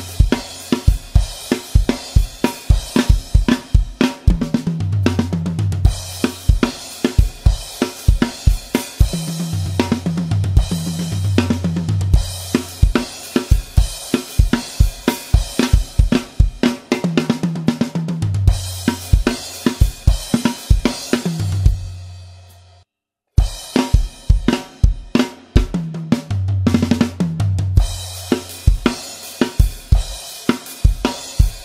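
Mapex Orion drum kit with Zildjian A cymbals playing a 12/8 rock groove of kick, snare, hi-hat and crashes, over a backing track whose sustained low notes step in pitch. Everything stops dead for about half a second a little past two-thirds of the way through, then the groove comes back in.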